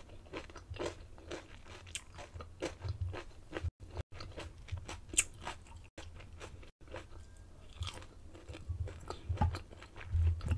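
Close-miked chewing and crunching of crisp fried food: a string of short crackling bites and chews, with one sharp crunch standing out about five seconds in.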